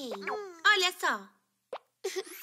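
A cartoon baby's voice babbling wordlessly for just over a second, its pitch sliding downward, then a short plop near the end.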